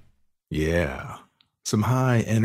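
Speech after the music has faded out: a short drawn-out vocal sound about half a second in, then talking starts near the end.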